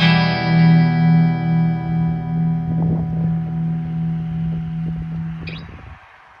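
Music: a single guitar chord struck once and left to ring, with a slow waver, dying away near the end.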